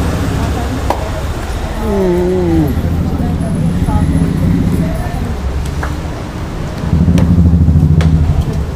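Street traffic: a steady low engine rumble from road vehicles, growing louder near the end as a vehicle comes close. About two seconds in there is a short falling voice sound.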